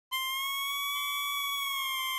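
A steady, high electronic tone with many overtones, starting abruptly and held evenly: a synthesized intro sound effect.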